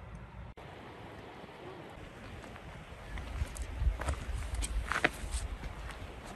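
Wind buffeting the microphone outdoors, a low rumble that grows stronger in the second half, with a few faint rustles and ticks.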